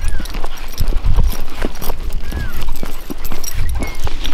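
Footsteps on an asphalt road at a walking pace, an irregular patter of steps about twice a second, with wind buffeting the microphone in a heavy low rumble.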